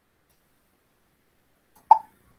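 Near silence, then one short, sharp sound near the end.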